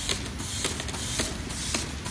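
Automatic roll-fed labeling machine running: a steady mechanical whir with a sharp click repeating about twice a second.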